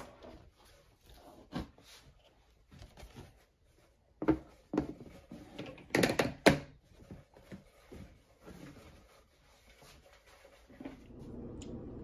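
Plastic storage-tub lid being fitted and pressed shut: scattered knocks and clicks of plastic, loudest in a cluster a little past the middle as the side latches are pushed down. A steady low hum comes in near the end.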